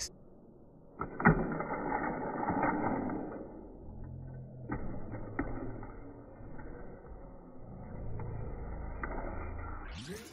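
Battery-powered Hot Wheels track boosters whirring steadily, with a die-cast toy car running along the plastic track and a few sharp clicks of it hitting the track pieces, the first about a second in.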